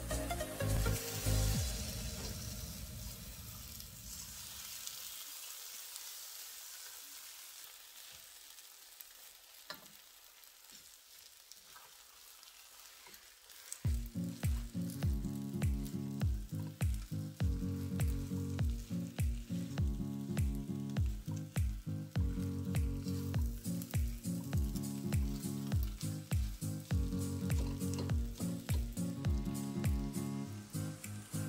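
Fried rice sizzling in a wok as it is stirred with a spatula, quiet through the middle. Background music fades out over the first few seconds, and music with a steady beat comes back about halfway through.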